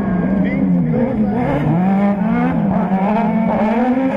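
Several Buggy1600 autocross buggy engines revving hard as the pack races past, their pitch rising and falling through the gears.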